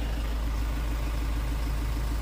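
Car engine idling: a steady low rumble with a fast, even pulse.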